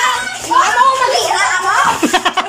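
Children's high-pitched shouts and calls as they play, voices overlapping.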